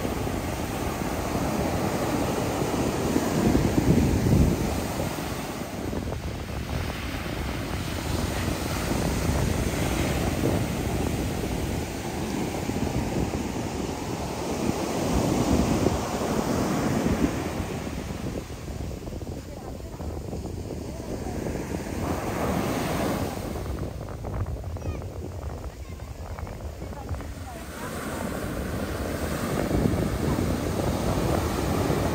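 Ocean surf breaking and washing up the beach in slow surges, loudest about four seconds in and again around fifteen seconds in; the waves are strong.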